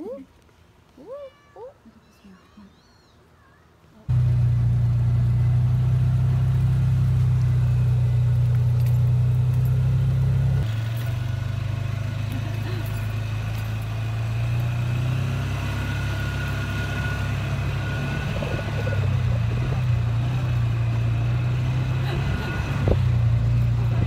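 A small kitten meowing a few times, thin rising and falling calls, then from about four seconds in the engine of an open side-by-side utility vehicle running steadily as it drives, a loud low drone that settles a little lower about ten seconds in.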